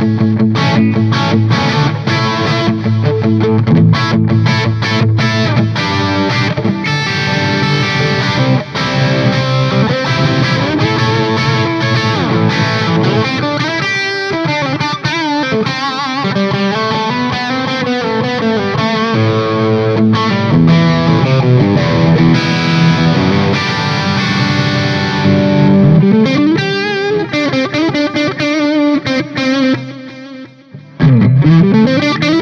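Distorted electric guitar playing classic-rock riffs and chords through a Red Seven Duality 100 tube amp head, its output tamed by a Fryette Power Station PS-2A reactive-load attenuator, with an effect pedal in the chain.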